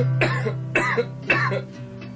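A man coughs three times, about half a second apart, over a held chord that rings on and fades out.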